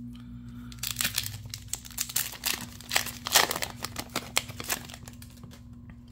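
Foil booster-pack wrapper being torn open, a quick run of crinkles and crackles from about a second in until near the end, over a faint steady hum.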